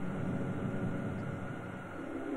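Steady low rumble of a spaceship engine sound effect, easing off slightly near the end.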